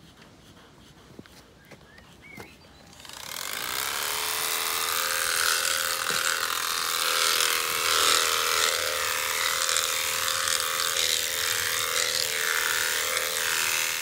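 Electric sheep shears start up about three seconds in and run with a steady buzz, shearing out maggot-infested wool from a sheep with fly strike.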